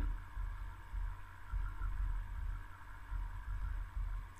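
Steady low hum and rumble of the recording's background noise, with faint steady tones above it and no distinct events.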